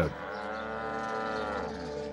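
Cow mooing: one long call lasting about a second and a half, its pitch rising slightly and falling again.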